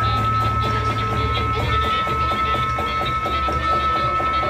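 Live rock band music: a steady high sustained tone held over a quick, even pulse of short hits, about four or five a second. The low bass drops out about two seconds in.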